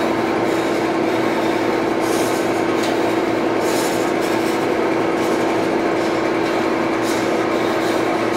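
Steady machine hum with one unchanging low tone. Faint brief rustles of a shoelace being threaded and pulled come over it now and then.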